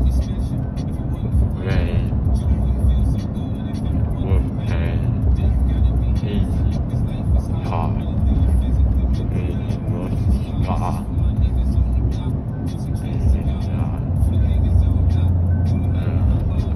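Steady low road and engine rumble heard inside a moving car's cabin, with faint brief snatches of a voice every few seconds over it.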